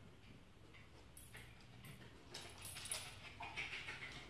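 A small dog's claws clicking and scuffing on a hardwood floor as it moves about, a few light clicks at first and busier and louder in the second half.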